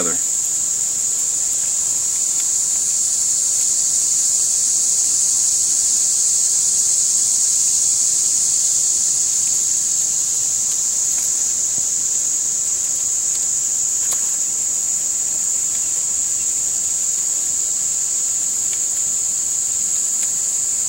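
A chorus of insects buzzing in one steady, high-pitched drone that holds without a break.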